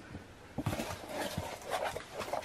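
Cardboard shipping box flaps being pulled open by hand: a quick run of scrapes and rustles starting about half a second in.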